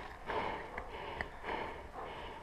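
Breathing close to the microphone: two soft, breathy swells about a second apart, with a couple of small clicks between them.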